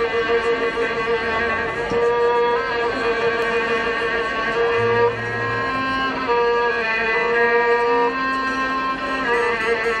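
Albanian folk instrumental ensemble playing: a violin carries a wavering, ornamented melody over held lower notes from guitars and long-necked lutes (çifteli and sharki).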